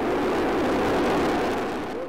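Rocket engines at liftoff: a dense, rushing noise with no distinct tones that swells in, holds steady and begins to fade near the end.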